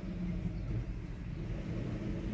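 Steady low rumble of engine and road noise heard inside a car's cabin as it drives slowly.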